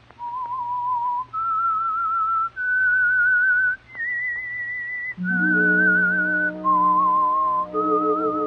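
A person whistling a slow signature theme melody, each note held about a second with vibrato. Four notes climb step by step, then the tune falls back. Sustained instrumental chords come in underneath about five seconds in.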